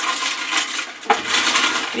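Strands of pearl beads clattering and clicking against each other and the gold box as they are lifted and draped by hand, a dense run of small clicks with one sharper click about a second in.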